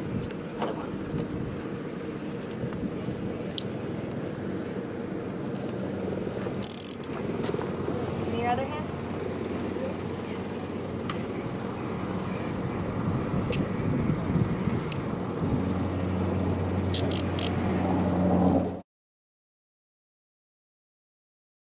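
Metal handcuffs clicking as they are ratcheted shut, scattered sharp clicks with a quick run of them near the end, over a steady low machine hum. Everything cuts off suddenly just before the end.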